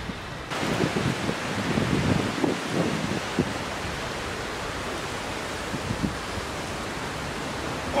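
Wind noise on the microphone: a steady rushing hiss that starts abruptly about half a second in, with low buffeting rumbles through the first few seconds.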